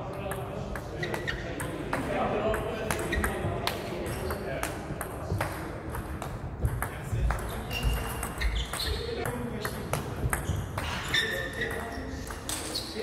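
Table tennis ball being struck back and forth with rubber-covered paddles and bouncing on the table during a backhand drive rally: a quick, irregular run of sharp pings and clicks, with the hard echo of a large hall.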